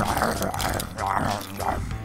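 A person eating potato chips noisily, with exaggerated growling 'yum yum' grunts of enjoyment and crunching.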